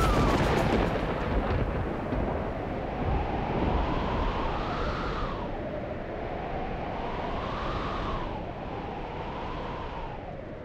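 A dramatic rumbling sound effect from a TV serial soundtrack. It is a deep, noisy rumble, loudest at the start, that swells and ebbs in slow whooshes about every three seconds and grows slightly quieter toward the end.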